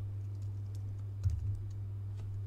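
Scattered soft clicks of computer keyboard and mouse input, with one heavier low thump a little past the middle, over a steady low electrical hum.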